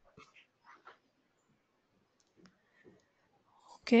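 Near silence broken by a few faint, short clicks and small noises over an audio line, then a voice begins speaking right at the end.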